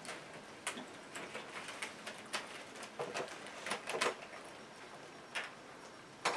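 Quiet handling noises: a few scattered light clicks and rustles from a wicker basket being handled.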